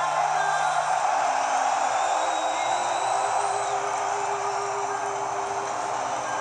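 Steady arena crowd noise with faint music underneath, coming from a television's speaker and picked up by a phone.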